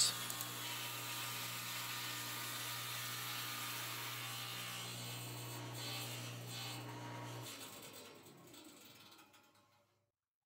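Table saw motor running with a steady hum and blade whine. About seven and a half seconds in, the hum cuts off as the saw is switched off, and the blade noise fades away as it spins down.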